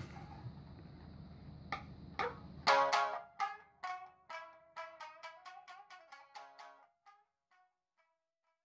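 Two shamisen being played: a couple of single plucked notes, then from about three seconds in a quick run of sharp plucked notes that thins out and dies away near the end.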